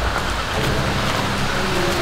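A steady rushing hiss of noise, with a low held tone coming in near the end.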